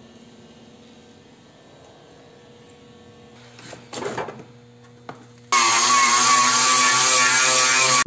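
Low background hum with a short clatter of handling around the middle, then, starting suddenly about five and a half seconds in, a loud electric power tool motor running steadily with a wavering whine.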